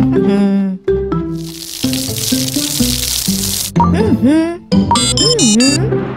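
Cartoon background music, with a hissing rush like water spraying from a hose for about two seconds, likely the paddling pool being filled. Wavering, sliding pitched sound effects follow near the end.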